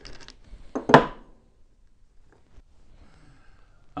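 Small metallic clicks and one sharp clink about a second in as an air compressor connecting rod and its cap are taken apart by hand, followed by a few faint clicks.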